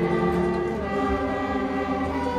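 Student string orchestra of violins, violas, cellos and double bass playing a piece in held, sustained notes, with the harmony moving to new notes about a second in.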